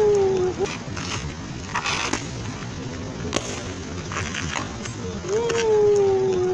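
Strikes and kicks smacking against leather focus mitts in a few sharp slaps, with a half-second rushing burst about two seconds in. A long held note that sinks a little in pitch sounds at the start and again near the end.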